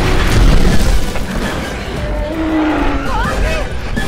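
Action-film soundtrack of a dinosaur fight: a deep boom in the first second over the score, then pitched, bending vocal sounds in the second half.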